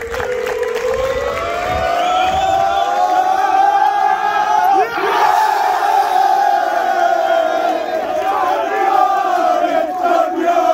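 A group of footballers holding one long, rising shout together as the trophy is about to be lifted, swelling into cheering about five seconds in as it goes up, then carrying on.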